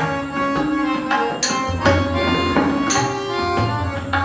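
Harmonium holding steady chords over tabla strokes in an instrumental passage of Indian devotional music, with two sharp bright strikes, one about a second and a half in and one near three seconds.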